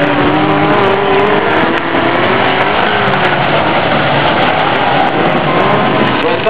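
Dirt-track race car engines revving as the cars race, several engine notes overlapping and rising and falling in pitch.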